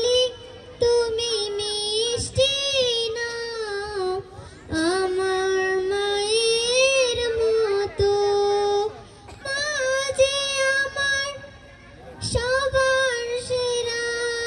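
A girl singing solo, a high melody in long phrases with short pauses between them.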